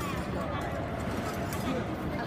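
Indistinct voices murmuring in the background over a steady low rumble, with no clear words.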